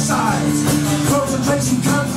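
Live folk-punk band playing: strummed acoustic guitar over a steady low chord, with a man's voice singing over it.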